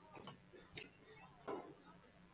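Near silence with a few faint, short taps, the loudest about one and a half seconds in.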